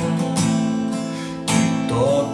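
Acoustic guitar strummed, its chords ringing on, with a fresh strum about one and a half seconds in.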